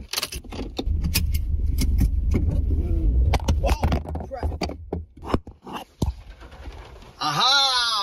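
A car's ignition key turned with a jangle of keys, and the engine starting, a low steady rumble for about three seconds, with scattered sharp clicks.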